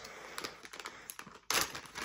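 Small clear plastic bag crinkling as it is handled, faint with scattered ticks at first, then a louder, sharper crinkle about one and a half seconds in.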